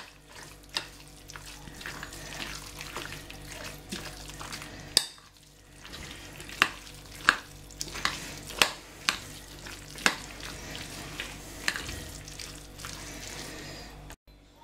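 A metal spoon stirring a thick, wet salad of grated beetroot and mayonnaise in a glass bowl: a steady soft mixing sound, broken by repeated sharp clicks of the spoon striking the glass, most of them in the second half.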